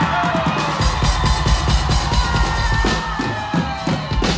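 Live band playing: an electric guitar line with slow sliding pitches over a steady drum kit beat and bass.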